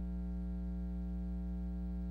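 Steady electrical mains hum, a constant low buzz with a row of evenly spaced overtones, much quieter than the speech around it.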